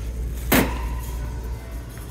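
A plastic bag crinkling briefly as it is handled, about half a second in, over a steady low hum.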